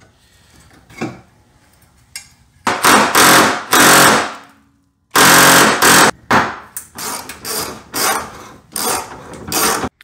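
Power ratchet on a socket extension run in short trigger pulls to undo the 10 mm bolts holding the 4Runner's fender and filler plate: two runs of about a second each a few seconds in, then a string of quick blips about twice a second.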